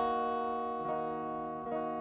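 Semi-hollow electric guitar strumming a D minor chord and letting it ring, struck again twice, about a second in and near the end.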